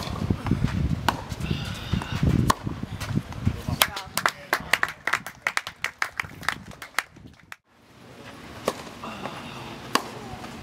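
Tennis ball struck by a racket on a hard court: a sharp crack at the start as a serve is hit, then more ball hits and bounces heard as a run of sharp knocks in the middle, and another hit near the end.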